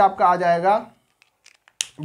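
A man talking in a small room, then a pause of about a second holding a few faint ticks of a marker on a whiteboard, and a short hiss just before he speaks again.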